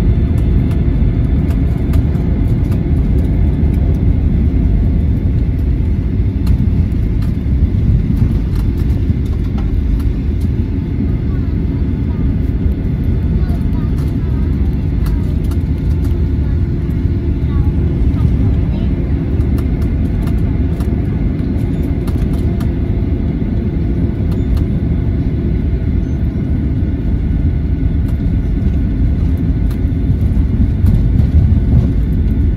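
Steady low rumble of a jet airliner's cabin while it taxis after landing, with the engines running at low taxi power, heard from inside the cabin.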